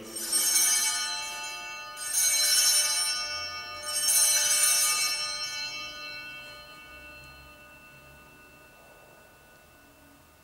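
Altar bells rung three times, each ring a bright shimmer of small bells that dies away, the last fading slowly. Rung at the elevation of the consecrated host during Mass.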